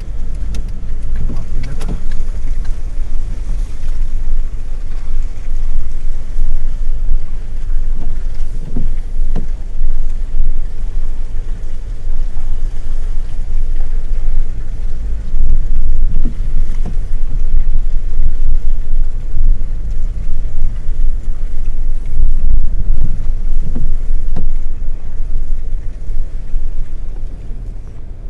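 A car driving slowly over snowy pavement, heard from inside the car: a steady low rumble of engine and tyres.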